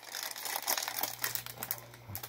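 Clear plastic wrapping around a boxed item crinkling and rustling in irregular crackles as it is handled and turned over, thinning out near the end.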